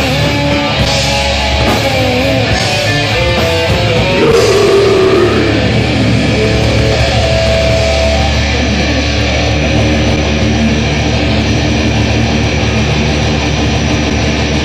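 Live heavy metal band playing an instrumental passage: distorted electric guitars, bass and drums, loud and dense. In the first half a guitar slides and bends notes downward, and after a held note about two-thirds of the way through the band settles into a steady wall of sound.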